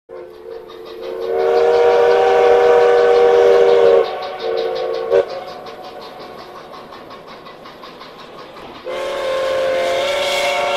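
Steam locomotive whistle blowing a long chord of several tones, then a short second blast about five seconds in, over steady rhythmic chuffing of the engine; the whistle sounds again near the end.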